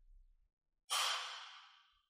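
One audible human breath about a second in, starting sharply and fading out within a second; otherwise near silence.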